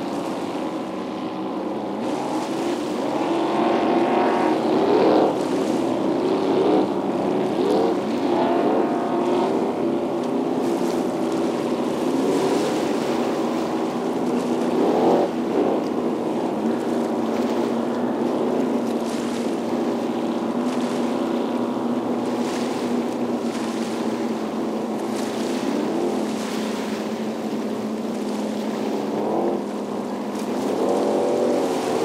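Racing powerboats' Holden 253 4.2-litre V8 engines running on a warm-up lap, a steady engine drone with the pitch rising several times as the boats are revved.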